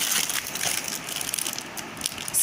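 Plastic snack packets crinkling and rustling as a hand sorts through a box full of them, a continuous crackle of many small clicks.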